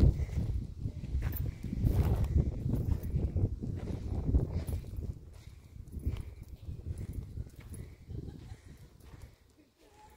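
Irregular low rumbling and knocking on a handheld camera's microphone from walking over a dusty path, with wind on the microphone; it is loudest in the first half and dies away near the end.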